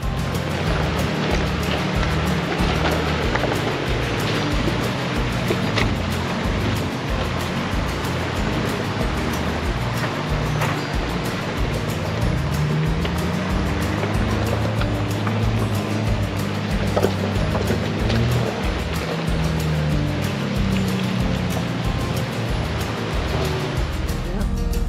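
Rushing river water as off-road vehicles drive through a shallow rocky river crossing, an engine note rising and falling in the second half, over background music with a steady beat.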